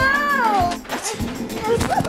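A young child's high-pitched, drawn-out squeal that falls in pitch and fades about a second in, with shorter vocal bits after it, over background music.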